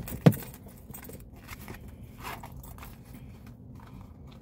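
Hands rummaging through small items in search of a gas card: a sharp click just after the start, then faint scattered clicks and rustles.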